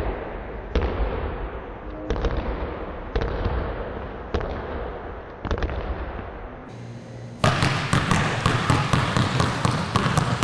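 Two basketballs dribbled on a hardwood gym floor, each bounce echoing in the hall. At first the bounces come about once a second; about two-thirds of the way in, after a short break, they become a quick run of about four bounces a second.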